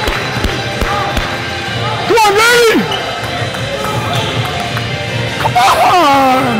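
Several basketballs bouncing on a hardwood gym floor in quick, irregular thuds during a practice drill. Two loud, pitched squeals cut through, one about two seconds in and another near the end.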